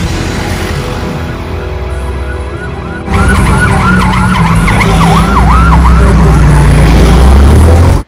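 Emergency vehicle siren yelping rapidly up and down, starting suddenly about three seconds in and loud, over a low vehicle rumble and music.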